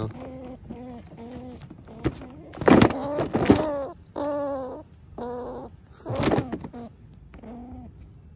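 A juvenile gray squirrel caught in a wire cage trap gives a series of short, high squealing calls. Two louder, harsher bursts come about three seconds in and again about six seconds in.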